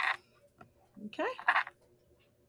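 A woman's voice saying "okay" about a second in, with a brief hiss just before it at the start, over a faint steady hum.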